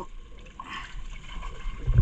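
Sea water lapping and sloshing against the hull of a drifting boat, with a loud low thump just before the end.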